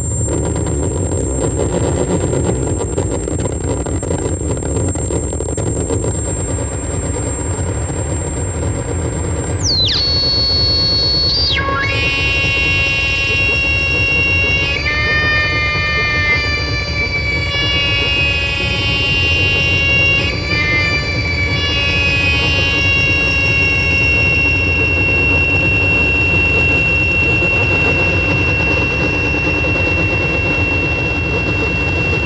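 Live electronic noise music from a table of mixer and effects gear. A dense low rumble runs under a thin high whine for about ten seconds. Then a tone sweeps down and a cluster of many held electronic squealing tones comes in, shifting pitch in steps, and near the end it settles into one steady high tone over the rumble.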